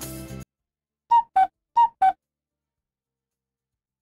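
Background music cuts off, then a short four-note chime plays: two falling high-low pairs of clear, flute-like tones.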